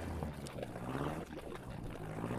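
A low, faint drone whose pitch wavers up and down, with a soft click about half a second in.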